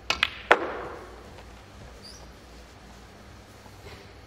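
A snooker shot: three sharp clicks of cue and balls within about half a second, the last and loudest with a short ringing tail.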